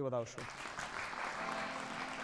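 Studio audience applauding: many hands clapping in an even, steady patter that starts right after a man's voice stops.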